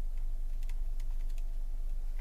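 A few scattered light clicks of a computer keyboard, over a steady low hum.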